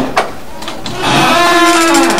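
A click near the start, then a metal apartment door swinging open on a squeaky hinge: one steady creak for about the last second.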